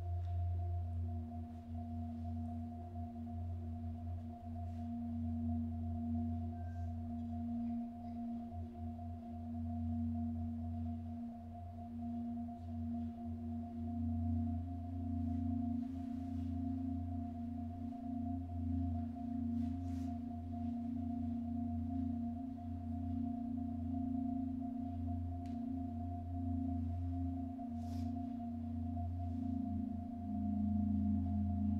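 Several marimbas playing slow, sustained rolled chords with soft yarn mallets, the notes blending into a steady ringing hum. The chord shifts about halfway through and again near the end.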